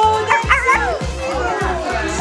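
Background music with a steady beat, about four beats a second, and a high vocal line that bends and glides in pitch.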